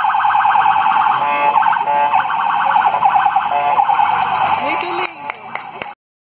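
Police vehicle siren wailing in a fast warble, briefly switching pattern about a second in, then cutting off about five seconds in.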